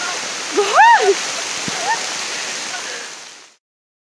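Small ice pellets falling steadily, a dense pattering hiss on the trees and ground. About a second in, a woman's voice gives one rising-and-falling call, with a shorter one after it. The sound fades out near the end.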